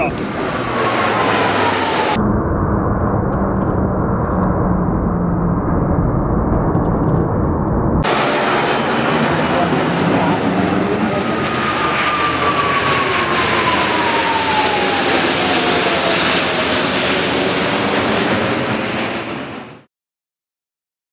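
Loud jet roar from the Blue Angels' F/A-18 Hornets passing overhead in formation. A high whine falls in pitch as the jets pass, briefly near the start and again over several seconds in the second half. The sound cuts off just before the end.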